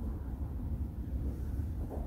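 Steady low rumble of background noise with a faint hiss above it, and no voice.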